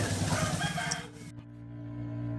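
A rooster crowing over outdoor background noise, cut off abruptly a little over a second in. Low, steady held notes of bowed-string background music follow.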